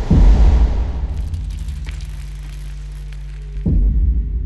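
Cinematic sound-design bed for a title card: a deep boom with a noisy whoosh at the start that fades over a second or so, over a low steady drone, then a second low hit near the end.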